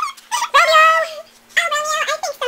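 A child's high-pitched voice imitating a horse's whinny: two drawn-out, wavering calls, the first about half a second in and the second starting near the end.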